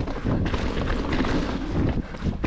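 Wind rushing over the action camera's microphone while a Chromag Rootdown hardtail mountain bike rolls fast down a dirt trail, its tyres and frame rattling and knocking over roots and bumps.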